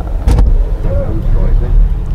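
A motor vehicle's engine running close by, a steady low rumble, with a sharp knock about a third of a second in.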